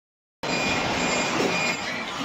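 Ahmedabad Metro train heard from inside the carriage: a steady rail and carriage noise with a faint high-pitched tone, beginning about half a second in.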